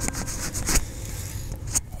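Handling noise on the camera's microphone: a low rumble with two sharp knocks, one a little under a second in and one near the end.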